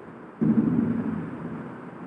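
Handling noise on the recording phone's microphone: a sudden low rumble about half a second in that fades gradually over the next second and a half.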